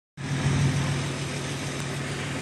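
Big diesel engine running steadily in the background, a kind of loud, even low drone.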